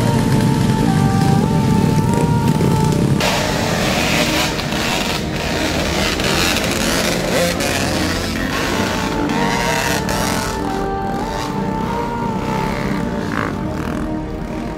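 Background music with a steady melody, mixed with several dirt bike engines running.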